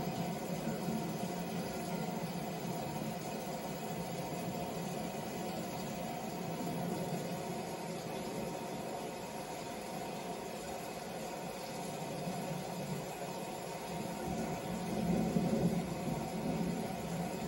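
Steady hum and hiss with a low rumble, the audio of a wrestling match played back on a TV set and picked up off the set by a camera microphone; it swells briefly just before the end.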